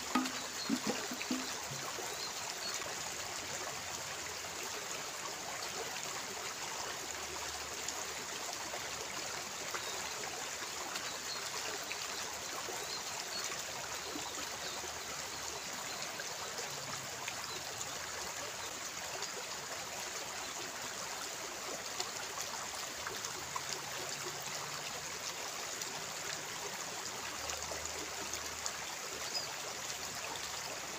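Shallow stream running over rocks: a steady rush and trickle of water.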